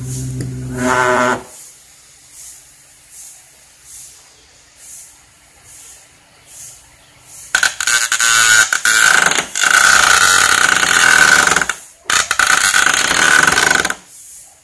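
Small toy DC motor on a 9 V battery whining as it spins a bottle-cap disc, for about the first second and a half. From about halfway on, the spinning metal bottle-cap disc grinds against the tabletop: a loud scraping with a steady shrill tone, broken by a brief gap about two seconds before the end.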